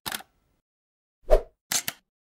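Sound effects of an animated logo intro: a brief tick at the start, one short pop a little past the middle, then two quick clicks near the end, with dead silence between them.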